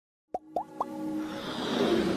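Animated logo intro sound effects: three quick pops, each sliding upward in pitch, starting about a third of a second in, then a whoosh that swells louder toward the end.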